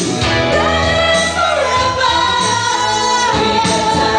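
A woman singing into a handheld microphone over instrumental accompaniment with a steady bass. Her voice glides between notes in the first half, then settles into a long held note with vibrato.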